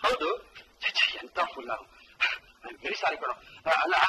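Film dialogue: a man speaking excitedly in short, rapid bursts.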